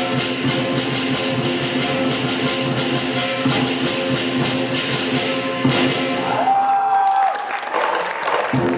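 Live lion dance percussion: drum, cymbals and gong playing a steady driving rhythm, the cymbals and gong ringing on. Near the end the beat breaks off and a single held high note sounds briefly before the percussion clatters back in.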